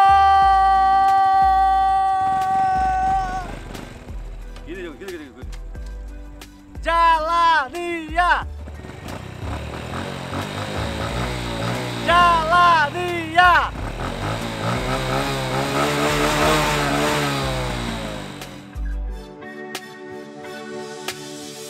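A man yelling one long held note, then two short rising-and-falling whoops. Near the end a motor scooter engine revs up and falls back over several seconds, with background music underneath.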